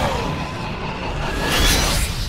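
Trailer music with a steady low bed, and a whooshing swell that rises near the end and cuts off sharply.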